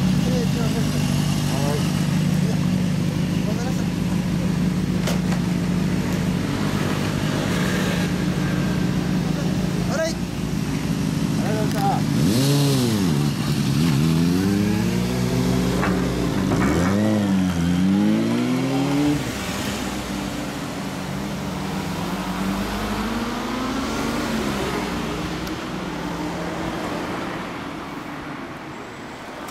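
Suzuki GSX250SS Katana motorcycle engine idling steadily, then revved up and down several times as the bike pulls away, its sound fading off toward the end.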